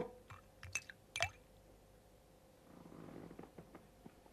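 Faint clinks of a china tea service as sugar lumps are dropped into a teacup: three light, sharp clicks within the first second or so, then a soft low rustle near the end.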